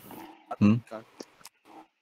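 Speech over a voice-chat call: a short questioning "hmm?" about half a second in, with faint noise and a few small clicks around it.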